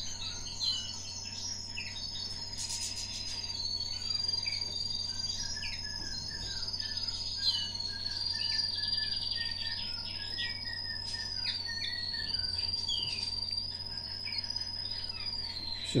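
Canary × common linnet hybrid nestlings begging while being fed soft food from a stick: many short, high chirps and squeaks, over a steady high, slowly wavering whistle.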